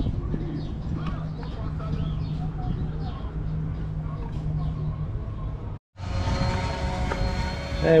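Steady low mechanical hum with faint voices in the background. About six seconds in it cuts off suddenly, and a different steady droning hum with several held tones follows.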